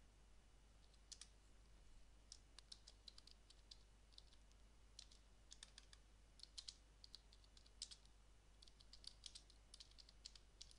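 Faint computer keyboard typing: irregular keystroke clicks coming in short runs, over a low steady hum.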